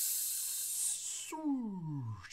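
A man's voice giving a long, breathy hiss for over a second, then a drawn-out vocal sound falling in pitch near the end, as he stretches out the announcement of a player's name.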